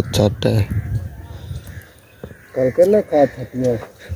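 Crows cawing, a run of about four caws, about three a second, in the second half.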